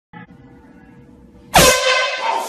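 A handheld canned air horn goes off suddenly about a second and a half in: one loud, harsh, held blast.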